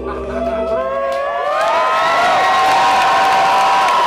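Concert audience cheering and whooping at the end of a live song, with many high, gliding whoops building up and growing louder. The band's last held low notes fade out in the first second.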